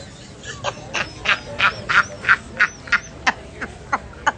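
Stifled laughter held in behind a hand: an even run of short, sharp bursts, about three a second.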